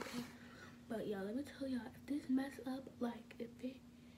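A woman talking quietly and indistinctly, close to the microphone, after a short breathy hiss at the start, over a steady low hum.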